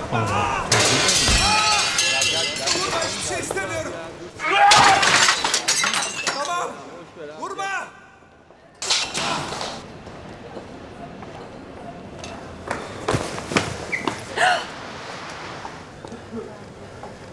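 Raised, indistinct voices with glass shattering and things crashing, loudest about five seconds in, then sporadic smaller crashes and clinks.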